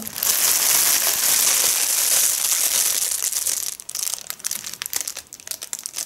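Clear plastic packaging of a clothing set crinkling as it is handled: a dense, continuous crinkling for about three and a half seconds, then broken crackles.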